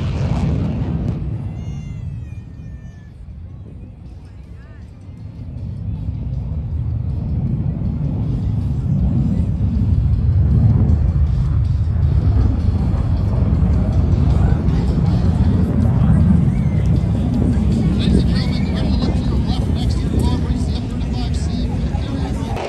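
Fighter jet's engine roar, a deep rumble that fades briefly and then builds as the jet comes back around and nears, staying loud through the second half.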